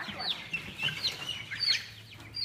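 A brood of chicken chicks peeping: a steady string of short, high peeps, each falling in pitch, several a second.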